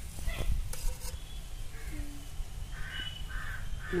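A bird calling outdoors: a quick run of about four repeated calls in the last second and a half, over a low steady rumble.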